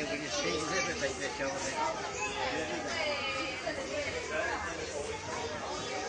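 Indistinct chatter of several people talking, with the words unclear.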